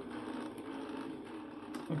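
Homemade magnet-and-coil generator running, its rotor spinning with a steady mechanical whirr and hum.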